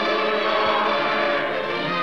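Orchestral film score with a choir singing long, sustained chords.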